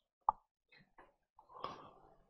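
A single short, sharp pop about a quarter of a second in, followed by a few faint small sounds.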